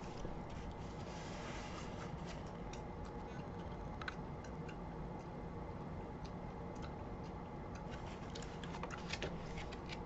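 Faint scattered ticks and light taps from a paperback picture book being handled and held up, over a steady low background hum.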